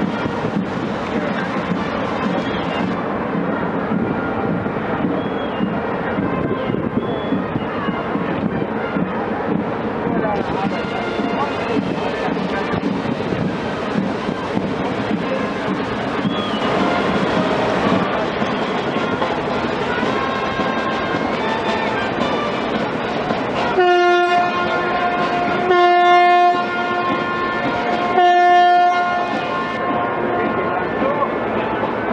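Steady crowd chatter, then near the end three loud blasts of a ship's horn about two seconds apart, each lasting about a second at one steady pitch.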